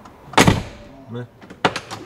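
Heavy SUV door mechanism giving one loud metallic clunk about half a second in, then a few lighter clicks near the end: a door sound like an old jeep's.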